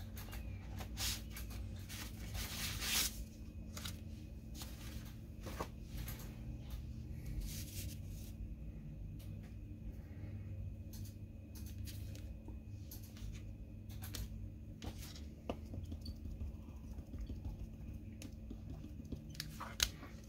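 Sheets of cardstock being handled and slid over a craft mat: scattered paper rustles and light clicks, over a faint steady low hum.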